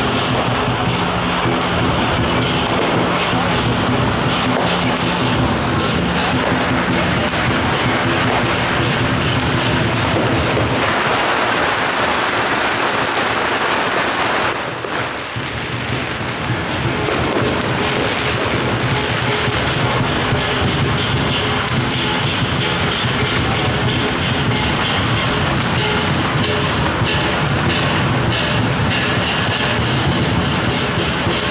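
Lion dance percussion: drums and cymbals beating a fast, continuous rhythm, with a brief dip in loudness about fifteen seconds in.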